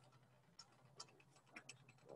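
Near silence with a few faint, irregular clicks and ticks.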